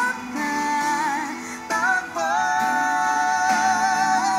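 Female vocalist singing a slow Tagalog pop ballad live with accompaniment: long high held notes with vibrato and small runs, a brief breath break just before halfway, then another sustained phrase.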